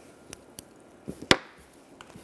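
Small embroidery scissors snipping thread and tulle: a few short sharp clicks, the loudest a little past halfway.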